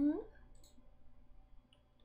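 The tail of a drawn-out spoken word fades out with a rising pitch just after the start, then a low steady hum of room tone with two faint computer mouse clicks about a second apart.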